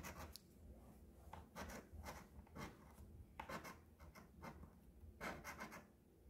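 A coin scratching the coating off a lottery scratch-off ticket: short, faint, irregular scraping strokes, several a second in little runs.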